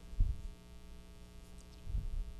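Steady electrical mains hum with two dull low thumps, one about a quarter second in and one near the end.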